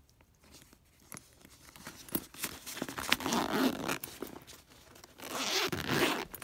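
Metal zipper on a fabric first-aid kit case being unzipped in two pulls, a longer rasp from about two to four seconds in and a shorter one near the end, after a few light clicks of the metal pull.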